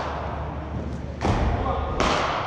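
A single thud of a bowled cricket ball arriving at the batting end about a second in, ringing on in the large indoor hall.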